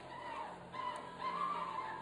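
Soft background music in a pause between speech: faint held notes that waver gently in pitch over a low steady hum.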